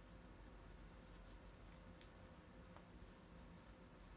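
Near silence: room tone with a faint steady hum, broken by a couple of faint small clicks about two seconds and nearly three seconds in.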